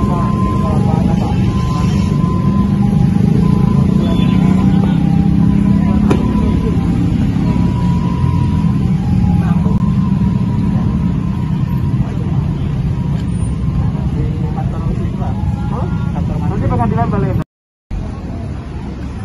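Loud, steady low rumble of road traffic with people's voices talking over it; the sound cuts out briefly near the end.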